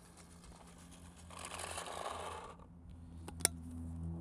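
Paintballs pouring from a 140-round pod into a paintball marker's hopper, a rattling rush lasting about a second, followed by a couple of sharp clicks.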